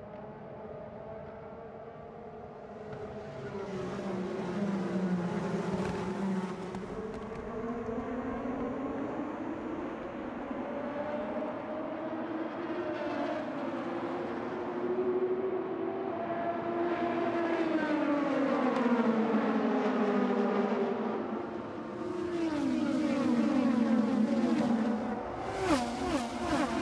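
IndyCar race cars' twin-turbocharged V6 engines running flat out as the field laps the oval. The engine pitch slides up and down and drops as cars go past, and it is loudest in the second half as the pack streams by.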